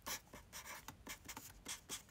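Faint writing with a Sakura My Name permanent marker: a quick run of short strokes as the pen tip moves over the surface.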